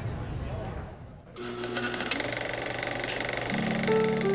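Crowd voices, then about a second in a dense, fast, even mechanical rattle starts and runs on, with held musical notes coming in near the end.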